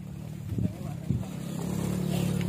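A motorcycle engine running with a steady low hum that grows louder, with two sharp knocks about half a second and a second in.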